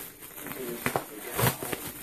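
Plastic parcel wrapping crinkling and rustling as hands work at it, with a few light clicks and taps.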